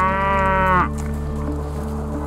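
A cow mooing once: one loud call that rises and then holds its pitch, cutting off just under a second in. A steady low drone carries on after it.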